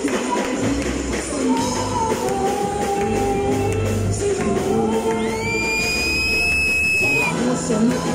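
Live band music: a man singing over keyboard and brass (trumpet and saxophone), with tambourine-like percussion. About five seconds in, a high note glides up and holds for about two seconds.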